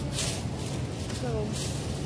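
Thin plastic produce bag rustling in short bursts as hot peppers are handled and bagged, over a steady low hum.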